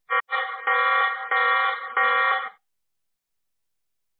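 An electronic alarm sounding in repeated pulses about two-thirds of a second long, cutting off abruptly about two and a half seconds in.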